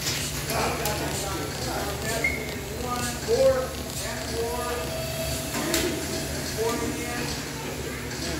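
Indistinct voices of people talking over a steady low hum, with a couple of sharp clicks.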